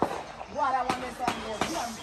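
Fireworks going off, a few sharp separate cracks with voices around them.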